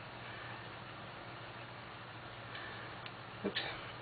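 Quiet room tone: a steady low hiss with a few faint ticks, then a brief spoken "oops" near the end.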